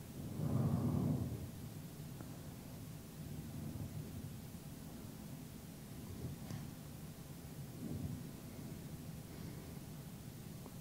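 Quiet room tone with a steady, faint low rumble, and a brief soft swell of noise in the first second.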